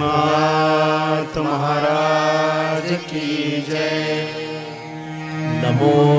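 Devotional chanting: long held sung notes over a steady low drone, without drumming.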